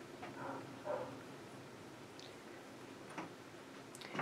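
Faint rustling of knit fabric being handled and lined up by hand, with a few soft ticks, one about a second in and another just past three seconds.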